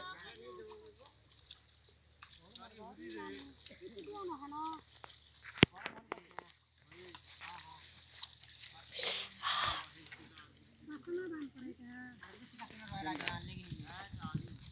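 Scattered, fairly faint voices of people working in a flooded rice paddy, talking on and off across the field. There is a sharp click about five and a half seconds in and a brief, louder noisy burst about nine seconds in.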